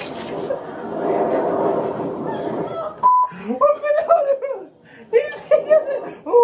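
A mouthful of water spluttered out through laughter, followed by short bursts of high-pitched laughing.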